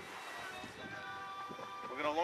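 Background music with sustained held tones, faint and rising slowly.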